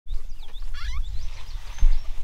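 Outdoor ambience: a low rumble of wind on the microphone, with faint bird chirps, short rising and falling calls, in the first second.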